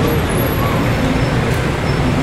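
Steady city street traffic noise.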